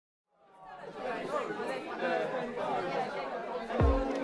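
Many people chattering at once, fading in from silence. Near the end a deep bass hit starts music with a held chord.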